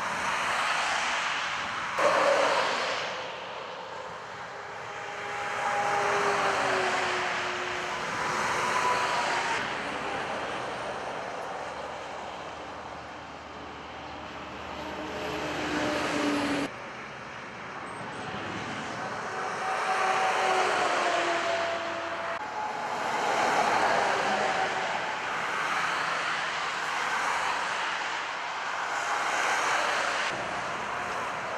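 Motorway traffic passing at speed: vehicles go by one after another, each a swelling and fading rush of tyre and engine noise, some with a sliding pitch. The sound jumps abruptly twice where the footage is cut.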